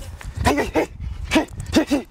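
A man shadowboxing gives short, sharp vocal exhalations with his punches, about five in two seconds, some in quick pairs.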